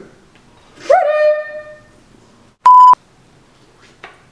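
A short, loud single-tone censor bleep at about 1 kHz, around two and a half seconds in. Before it, about a second in, comes a drawn-out vocal sound from one of the people at the table.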